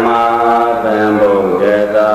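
A Buddhist monk's voice chanting Pali paritta verses in a steady, drawn-out monotone, holding one long syllable with a brief dip about one and a half seconds in.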